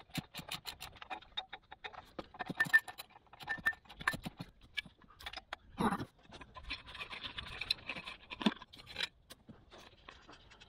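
Hand tools working on exhaust fittings under a car: a run of irregular sharp metal clicks, with a couple of louder knocks and a stretch of scraping about two-thirds of the way through.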